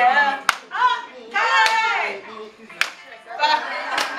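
Two sharp handclaps about two seconds apart, between bursts of a person's voice.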